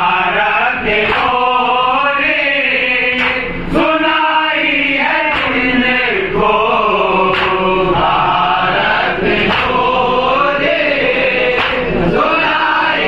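A group of men chanting an Urdu salam in unison, unaccompanied. The slow recitation moves in long rising and falling phrases that break about every two seconds.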